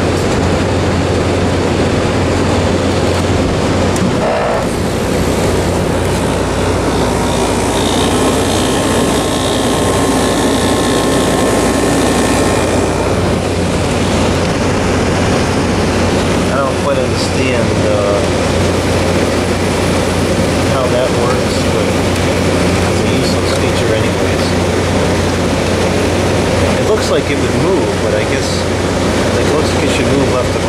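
Frigidaire FHWC253WB2 25,000 BTU wall air conditioner running on cool, its fan giving a loud, steady rush of air over a low hum. A deeper hum joins about four seconds in.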